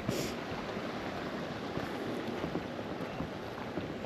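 Steady wind noise on an action-camera microphone fitted with a furry windshield, with faint scuffs of footsteps along a grassy path.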